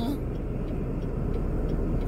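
Steady road and engine noise inside the cabin of a moving car, an even low rumble with no changes in pitch.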